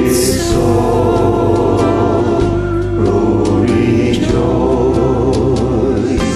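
Several voices singing a song together in harmony over a musical backing track, a layered multi-part recording of one slow song.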